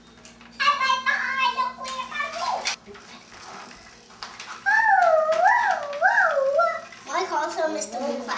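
A young child's wordless vocal noises: a high held call that drops at the end, then a voice sliding up and down about three times, then short babble near the end.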